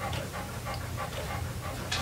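Pause in talk: a faint steady low hum with light room noise.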